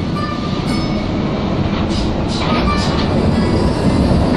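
Steady low rumble and running noise inside a moving train carriage, with a few short hissing swells in the second half.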